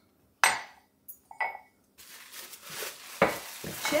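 Ceramic mug knocking against a granite countertop: one sharp clink about half a second in, then a few lighter knocks and a brief ring, and another knock near the end.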